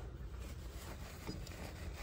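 Quiet room tone with a low hum and faint handling sounds as a dental X-ray sensor is pushed against a dog skull resting on a cloth towel.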